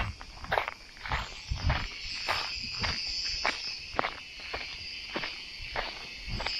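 Footsteps crunching on a dry trail of pine needles, grass and small stones, at a steady walking pace of about two steps a second. A steady high drone of insects runs underneath.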